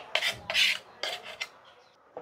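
Thick ground mung dal batter being scraped out of a mixer-grinder jar into a glass bowl: three short rasping scrapes in the first second and a half, then it fades.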